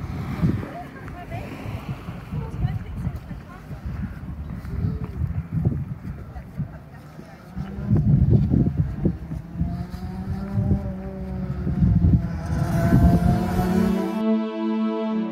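Wind buffeting a phone's microphone, a loud low rumble that rises and falls in gusts. Soft music fades in near the end.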